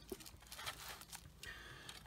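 Quiet room tone with a few faint, soft ticks.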